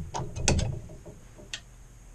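A few sharp clicks and clacks of metal being handled, bunched about half a second in, with one more click later. The lathe is not running.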